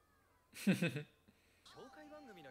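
A single short, loud cry about half a second in, lasting about half a second.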